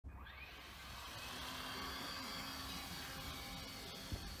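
Racerstar BR1103B micro brushless motor and propeller on a small RC airplane spinning up with a quick rising whine, then holding a steady high-pitched whine.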